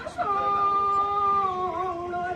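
A single voice holding one long, high, wailing chanted note. It begins just after the start and stays nearly level, stepping down slightly in pitch towards the end.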